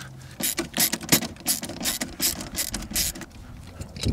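Irregular sharp clicks and rattles, several a second, of screws being backed out of an amplifier's plastic mounting plate and the plate and hardware being handled.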